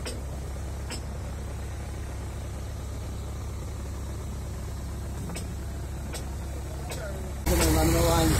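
Heavy-equipment diesel engine running steadily at idle, with a few faint clicks. Near the end the sound cuts abruptly to a louder engine with voices over it.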